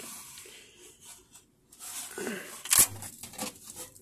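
Handling noise from a wood PLA print and its flexible steel build plate being picked up and flexed: soft scrapes and rustles, with one sharp click a little before three seconds in.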